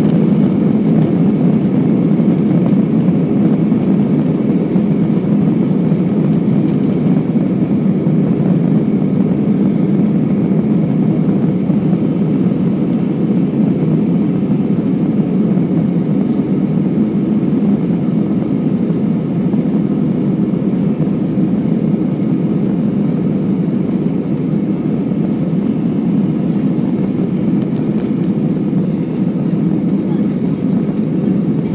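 Airbus A320 jet engines and rolling noise heard from inside the cabin as the airliner moves along the runway, a steady, loud, low engine noise that holds level throughout.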